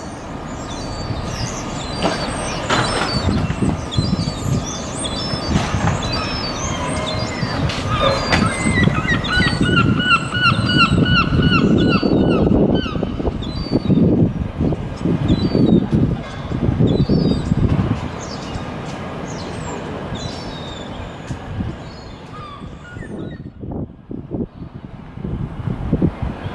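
Town street ambience: road traffic passing with a swelling and fading rumble, while birds call and chirp over it, with a quick run of repeated calls about ten seconds in.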